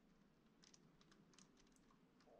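Near silence with a run of faint light clicks in the second half, from a metal sculpting tool working and blending soft modelling clay.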